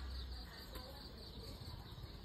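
Faint outdoor background with insects chirping, and a single light tick about three-quarters of a second in.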